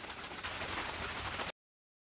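Two Spartan Mosquito bait tubes, filled with warm water over the bait mix, shaken hard to activate them: a dense, even noise that stops abruptly about one and a half seconds in.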